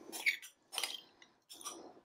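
Metal spoon scraping and clinking against a glass bowl as cooked new potatoes are scooped out, in three short, faint bursts.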